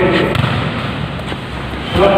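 Volleyballs being struck during practice in a large sports hall, with a couple of sharp hits that ring in the room over the hall's general noise.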